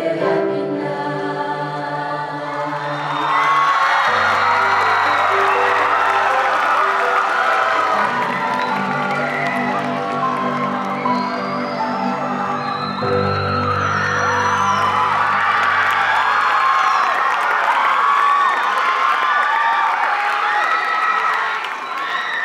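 A vocal ensemble holds a final sung chord that ends about three seconds in, then the audience cheers and applauds with whoops and whistles, while low held notes sound underneath.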